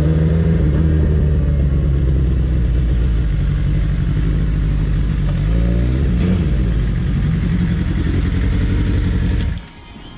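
Sport motorcycle engine running at low speed, its pitch rising and falling briefly about halfway through, then stopping abruptly near the end.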